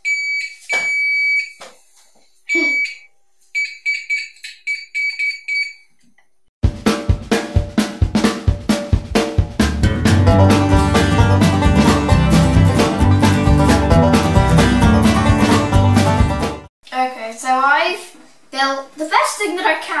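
Piezo buzzer of an Electro Dough kit, wired through Play-Doh to a battery pack, giving a high steady tone in on-off beeps of varying length for the first six seconds: the circuit works. Then loud music with a steady beat for about ten seconds.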